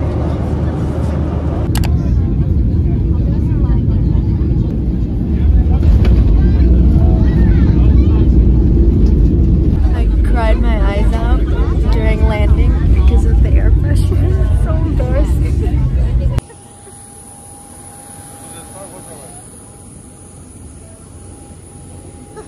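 Jet airliner cabin noise during landing: a loud, steady low rumble that grows louder about five and a half seconds in and holds. It cuts off abruptly at about sixteen seconds to a much quieter background with a steady whine.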